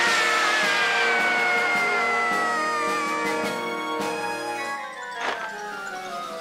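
Cartoon sound effect of something launched into the sky: a long whistle glides steadily downward and fades over about four seconds, over sustained background music. A short faint pop comes about five seconds in.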